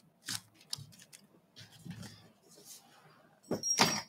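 Scissors cutting a small piece off a roll of clear plastic frisket film with paper backing: a few short snips, then a louder stretch of cutting and rustling film near the end.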